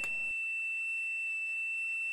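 Piezo disc driven by the function generator, giving a steady high-pitched electronic tone with faint overtones.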